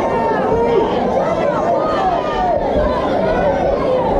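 A crowd of spectators at a boxing bout shouting and calling out, many voices overlapping at a steady level.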